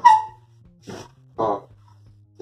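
A sharp metallic clank with a short ring as a car hood hinge clamped in a bench vise is worked by hand, then two short pitched cries about a second apart.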